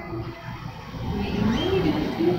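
A woman's voice with a drawn-out, gliding pitch near the end, over a steady low rumble.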